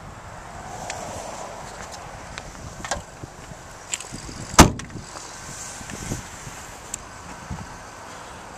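Trunk lid of a Dodge Avenger sedan slammed shut: one sharp, loud thud about four and a half seconds in, with a few faint clicks before it.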